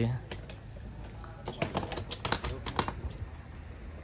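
A run of irregular light clicks and taps, thickest about halfway through.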